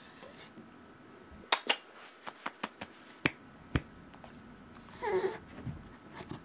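A run of about eight sharp clicks through the first four seconds, then a short, high, wavering squeak from a long-haired dachshund about five seconds in, the squeaking of a dog begging.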